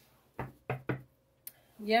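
Three quick knocks on a wooden tabletop during a tarot card reading, followed by a fainter click a little later.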